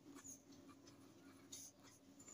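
Near silence with a few faint scratches of a pen writing on paper, striking through figures and writing small numbers, near the start and again about one and a half seconds in.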